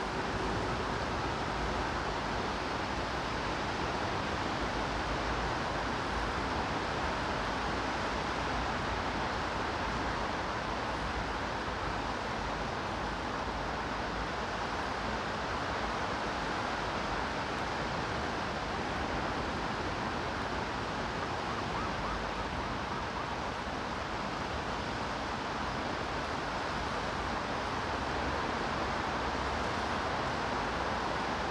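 Steady rain falling on wet paving, an even hiss that holds without a break, with a low rumble underneath.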